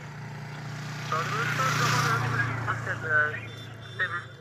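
A motor vehicle passing on the road, its low engine drone and tyre noise swelling to a peak about two seconds in and then fading, with a man's voice over it.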